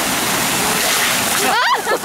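Water jets of a splash fountain spraying and splattering in a steady loud rush, the water striking a man's head as he leans into a jet.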